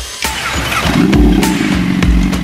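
Sport motorcycle engine starting about a second in, its pitch rising and then settling to a steady idle, over music with a heavy beat.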